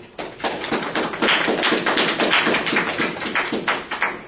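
A small audience clapping, quick and loud, starting just after a spoken "thank you" and dying away near the end.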